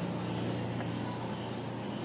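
Background sound of a large store: a steady low hum over an even noisy wash.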